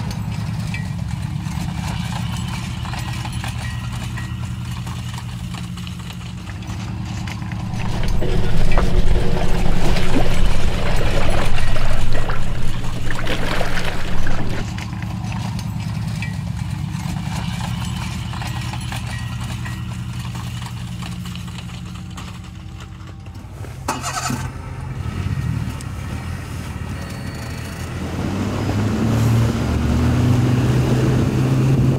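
A boat's outboard motor running steadily under way. It is joined by louder rushing noise from about 8 to 14 seconds in, and grows louder again near the end.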